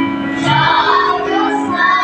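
Children's choir singing a Tagalog hymn in unison, with several of the children singing into microphones.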